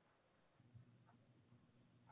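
Near silence: a faint low hum comes in about a quarter of the way through, with one tiny click.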